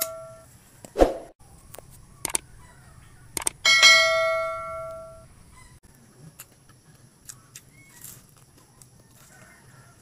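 A bell-like notification 'ding' sound effect, of the kind laid over an animated subscribe button, rings and fades away twice: once just fading at the start and once about three and a half seconds in. A short loud sound about a second in is the loudest event, and the rest is faint small clicks over low room hum.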